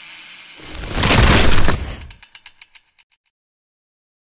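Title-sting sound effects: a loud rushing swell about a second in, followed by a run of rapid mechanical clicks, about eight to ten a second, that fade away.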